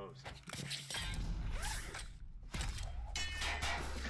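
Fight-scene soundtrack from a live-action short: a busy string of sharp clicks and hits, with a low steady rumble setting in past the middle.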